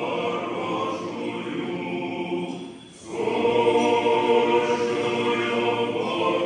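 Choir singing Orthodox liturgical chant a cappella in sustained chords, with a short breath between phrases about three seconds in before the singing returns louder.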